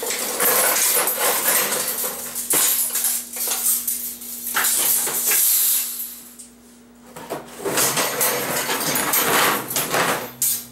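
Loud clattering and rustling of things being handled and moved, with sharp knocks and metallic clinks. It breaks off for a moment a little past the middle, then starts again.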